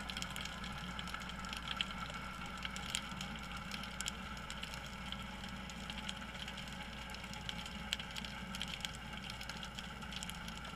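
Underwater ambience picked up by a submerged camera: a steady low hum with scattered sharp clicks and crackles.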